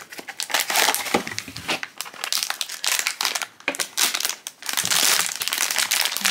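Foil blind-box bag and cardboard box being handled: a run of irregular crinkling and rustling as the box is opened and the foil pouch pulled out and squeezed, with a short pause about two-thirds of the way in.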